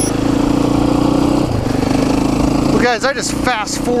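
KTM 530 EXC-R dual-sport motorcycle's single-cylinder four-stroke engine running steadily while riding a gravel road, with wind noise over the microphone. A man's voice comes in about three seconds in.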